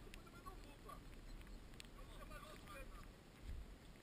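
Faint, distant voices talking over a steady low rumble of wind on the microphone, with two short clicks, one right at the start and one about two seconds in.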